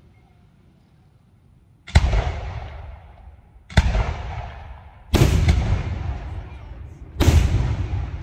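Aerial firework shells bursting overhead: after a quiet start, four loud bangs come about one and a half to two seconds apart, each followed by a long echoing rumble that dies away.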